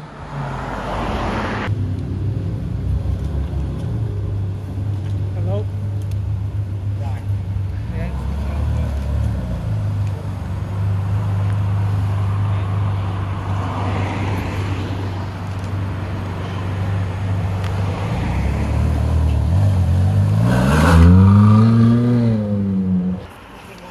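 Ferrari 458 Speciale Aperta's naturally aspirated V8 idling steadily, then revving up with a rising note near the end as the car pulls away.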